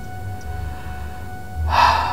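A crying woman's sharp, noisy gasp for breath, a sob, near the end, over soft sustained background music.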